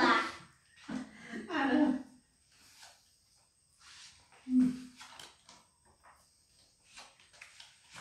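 Short bursts of people's voices, once about a second in and again near the middle, with quiet gaps and a few faint light taps in between.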